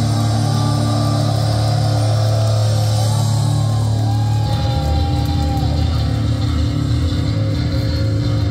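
Live metal band played loud through a club PA: distorted electric guitars hold sustained low notes with a higher line bending over them, then the band breaks into a choppy, rapid riff about halfway through.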